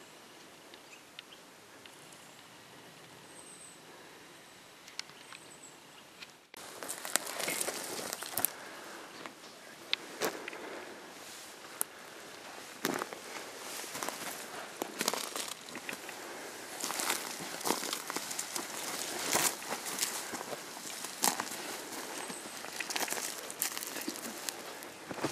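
Footsteps crunching over dry twigs, needles and loose dirt on a forest floor, close to the microphone, as irregular sharp snaps and rustles. They begin abruptly about six seconds in, after a quiet stretch.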